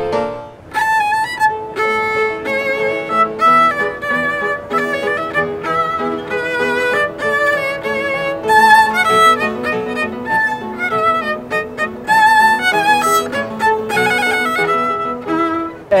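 Violin playing a classical piece: quick runs of notes with vibrato on the held ones.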